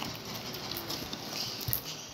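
Sticky handling sounds of slime being kneaded and stretched by hand at a table: small scattered clicks and squishes, with a soft thump near the end.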